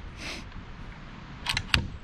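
Two sharp clicks from a CZ 1012 12-gauge inertia-driven shotgun being handled during assembly, about one and a half seconds in and just after, the second louder.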